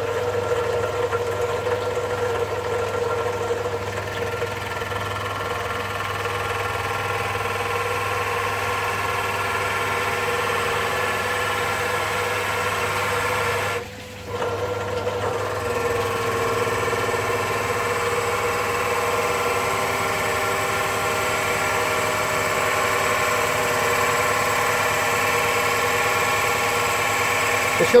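Bench pillar drill running steadily as its bit is fed slowly down into a section of oak log, boring out a hole. The running sound dips briefly about halfway.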